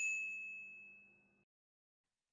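A single bright chime ringing out and fading away over about a second: a sound effect marking the cut to a new section title card.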